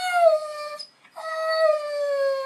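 Siberian husky howling on cue, the dog's 'singing': one howl that sags slightly in pitch and breaks off just under a second in, then a second, steady howl that starts right after and carries on.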